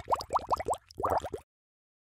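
Logo-animation sound effect: a rapid run of short rising bloops, about seven a second, then one slightly longer bloop about a second in, cutting off abruptly about one and a half seconds in.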